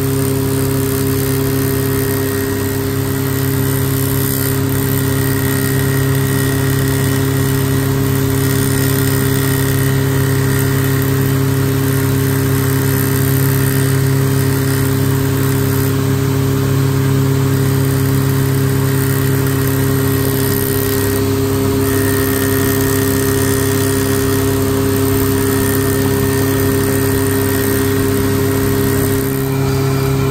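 Jewellery bangle-cutting machine running steadily, its motor and spindle giving a constant hum with a whir, with a gold bangle spinning on the chuck.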